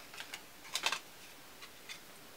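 A handful of light, irregular clicks and taps of small eyeshadow pans being handled and picked up, the loudest pair just under a second in.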